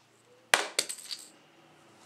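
A sharp snap about half a second in, followed by a quick, fading run of small clicks: fishing line being snapped to show the line breaking when the treble hook snags.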